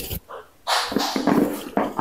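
A man's long breathy exhale with a low, groan-like voice in it, starting a little under a second in, as hands press down on his upper back during a spinal adjustment. A short knock comes right at the start.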